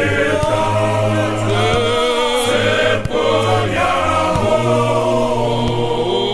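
A church choir singing a hymn in several-part harmony over a steady low sustained note, with a short breath break about three seconds in.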